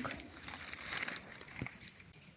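Soft rustling and crinkling from movement through tall dry grass, with one small sharp tick about three quarters of the way through.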